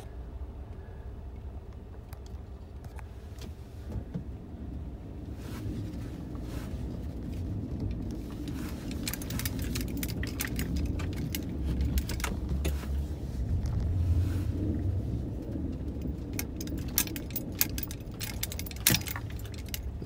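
A vehicle driving over snow-covered lake ice, heard from inside the cab: a low engine and tyre rumble that grows louder from about eight seconds in. Many light clicks and rattles run through the second half.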